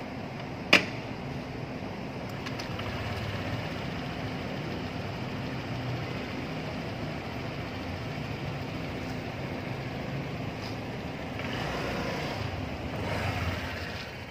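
Steady low mechanical hum, with a single sharp click about a second in and a swell in the sound near the end.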